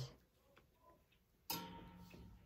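Near silence, broken about one and a half seconds in by a single sharp knock followed by a faint ring that fades away.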